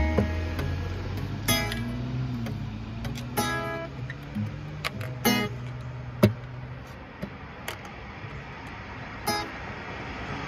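Acoustic guitar being strummed, with full chords struck about every two seconds and the strings ringing on between them. The playing becomes sparser and quieter after about seven seconds, with one more strum near the end.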